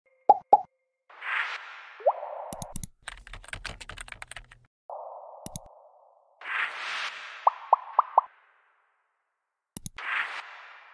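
Animated user-interface sound effects: two quick pops at the start, soft whooshes with a short rising blip, then a rapid run of keyboard-typing clicks lasting about a second and a half. A single mouse-style click follows, then more whooshes with four quick pops in a row, and another click just before the end.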